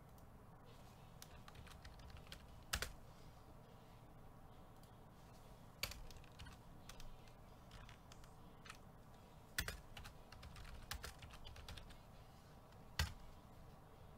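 Typing on a computer keyboard: irregular soft keystrokes with a few louder clacks spread through.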